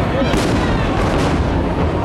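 Aerial firework shells bursting: a continuous rumble of booms, with sharper bangs about a third of a second in and again just after a second.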